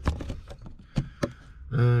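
Several sharp clicks and knocks, the clearest just after the start and a pair around one second in, over a low steady rumble.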